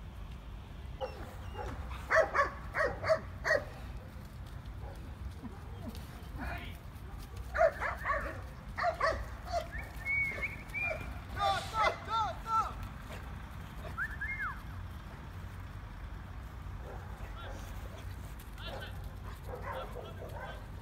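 Dog barking in short runs, four quick barks about two seconds in and another run around eight seconds, then higher yelps and whines that rise and fall around eleven to twelve seconds and once more near fourteen seconds.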